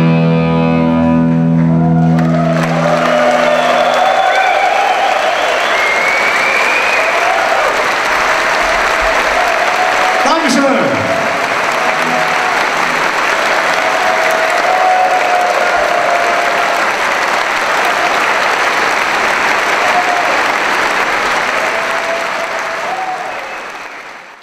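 An electric rock band's sustained chord rings out and stops about two seconds in, then a large concert audience applauds and cheers with shouts. A brief falling tone sounds about ten seconds in, and the applause fades out near the end.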